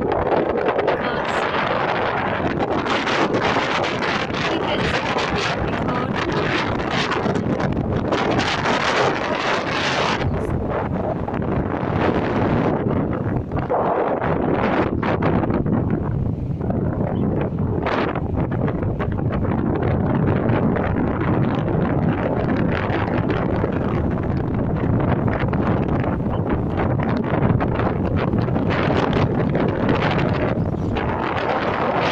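Strong, gusty wind buffeting a phone's microphone: a loud, continuous rumble with a hiss that is strongest in the first ten seconds and then thins out.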